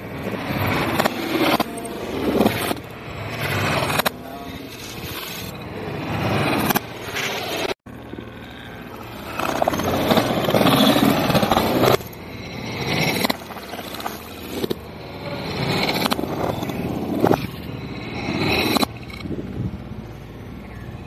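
Demolition of a brick wall: hammer blows on brick and concrete, with bricks breaking away and rubble falling, in a run of sharp knocks. The sound drops out briefly at a cut about eight seconds in.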